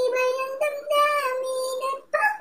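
A high singing voice holding a few long, steady notes that step up and down in pitch.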